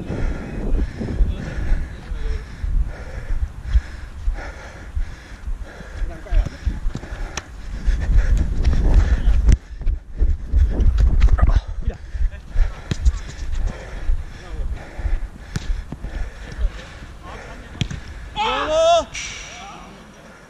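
Body-worn camera on a player running on artificial turf: heavy low rumble of movement and wind, with sharp knocks of feet and ball and distant shouts from other players. Near the end comes a loud wavering cry, a player yelling out as if hurt.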